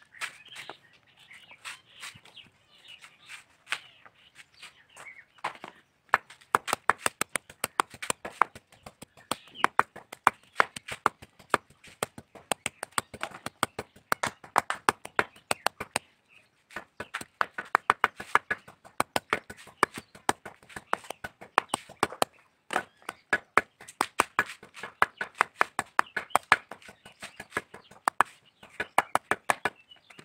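Curved knife blade repeatedly striking and shredding dry coconut husk against a wooden block, in quick sharp chops about three or four a second. The chops are sparse and light for the first few seconds, then come steadily, with two brief pauses.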